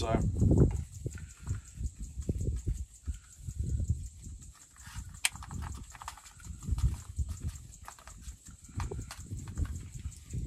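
Handling sounds of measuring flour: a paper flour bag rustling and flour pouring into an enamel camp mug, with soft irregular knocks and bumps and one sharp click about halfway through.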